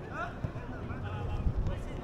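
Faint shouts of players calling across an outdoor football pitch, over a low wind rumble on the microphone, with a dull low thump about one and a half seconds in.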